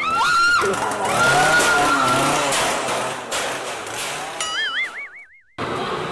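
Cartoon-style edited sound effects. There are quick up-and-down pitch sweeps at the start, then a noisy stretch. Near the end a wobbling, springy 'boing' tone cuts off abruptly into a brief silence.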